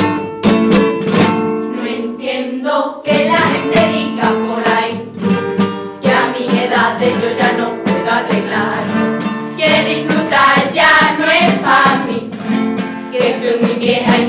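A women's carnival chirigota group singing a cuplé-style song in chorus to Spanish guitar strumming. The guitar plays alone for about the first three seconds, then the voices come in.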